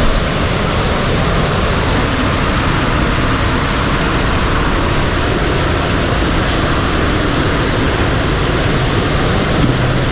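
Water rushing steadily along a water-slide channel as a tube rider floats through it: one continuous, even rush with no breaks.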